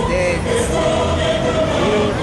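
Music with voices singing held notes, over the hum of a crowd.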